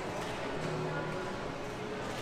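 Indistinct background voices and general murmur of an indoor food court, steady and at moderate level.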